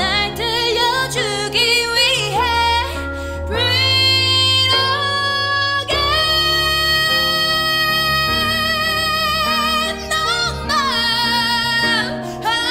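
A woman singing a slow Korean pop ballad over a backing track. She sings a short phrase in Korean, then holds long, high sustained notes with vibrato through the middle, before shorter phrases resume near the end.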